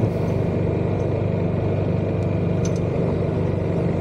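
Yamaha XMAX scooter's single-cylinder engine running steadily at low speed, a constant low drone.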